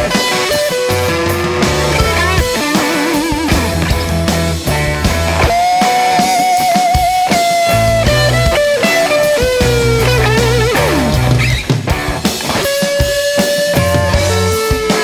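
Blues-rock instrumental passage: a lead electric guitar holds notes with wide vibrato and bends them over a bass guitar line and a drum kit.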